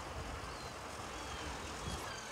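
Outdoor ambience: a steady low rumble with a few faint, short high chirps from small birds.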